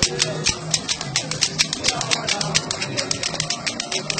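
Street festival percussion with crowd voices: sharp, irregular strikes several times a second over people's voices.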